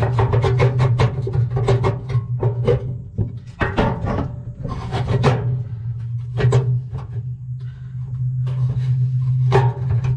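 Background music with a steady low drone, over irregular scraping and rubbing as a hand works inside a pellet smoker's metal fire pot among wet pellet debris.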